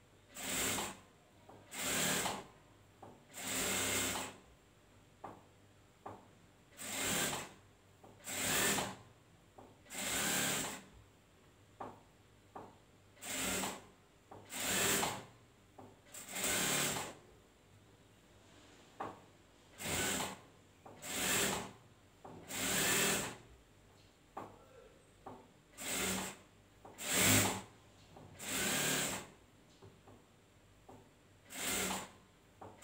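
Industrial sewing machine stitching fabric in short runs of about a second each. The runs come in groups of three, with a lull of about two seconds between groups while the fabric is repositioned, and a few faint clicks can be heard in the lulls.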